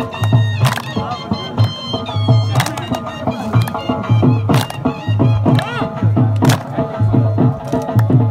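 Saraiki folk music for a jhumar dance: a steady, repeating low drum beat under a wavering melodic line, with a sharp clap cutting through about every two seconds.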